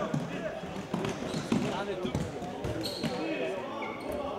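Futsal ball being kicked and bouncing on a sports-hall floor, a few sharp thuds, among players' shouts and voices in the hall.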